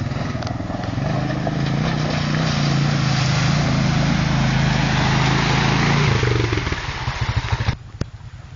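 ATV (quad bike) engine running as it drives through a shallow creek toward the camera, with the hiss of water spraying from its wheels. It is loudest mid-way, then fades and cuts off abruptly near the end.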